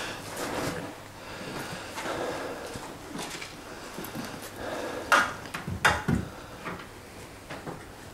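Rustling and movement noise in a small room, broken by two sharp knocks a little over five seconds in, less than a second apart, with a few lighter ticks near the end.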